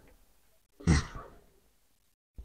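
A single short breath-like exhale, like a sigh, about a second in, against otherwise quiet room tone.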